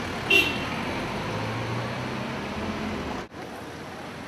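Street traffic noise with a low, steady engine hum, a brief high-pitched sound about a third of a second in, and an abrupt drop in level near the end.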